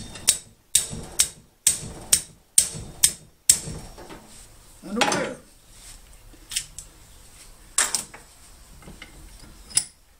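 A hand tool striking a length of bare number 12 copper wire stretched taut from a bench vise, beating it straight: a quick run of sharp strikes, about two a second, that stops after three and a half seconds. Then a brief pitched sound and a few scattered clicks.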